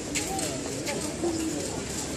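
A crowd of onlookers talking at once in the street, voices overlapping, with a couple of light clicks.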